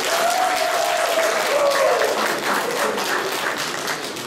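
Audience applauding: many people clapping steadily, with a voice carrying over the clapping in the first couple of seconds.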